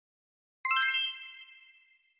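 A single bell-like metallic ding, struck sharply just over half a second in, ringing with many high overtones and fading away over about a second and a half.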